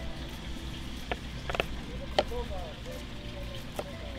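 Hands working whipping twine on the end of a three-strand rope: a few faint clicks and handling sounds, about four in all, over a steady low rumble.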